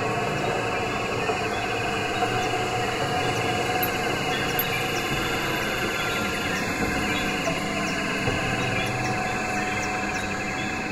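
Live-coded experimental electronic music: a dense, steady mass of many overlapping tones with fast chattering patterns running through it, with no clear beat.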